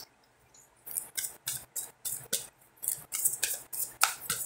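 Tarot cards being shuffled by hand. After a quiet first second there is a quick run of crisp card snaps and flicks, about three or four a second.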